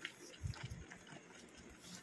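Grated potato in coffee water boiling thick in an iron pan, heard faintly as bubbling while a spatula stirs it, with a few soft low blips about half a second in.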